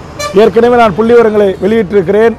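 Speech only: a man speaking Tamil in a continuous run, the recogniser having missed these words.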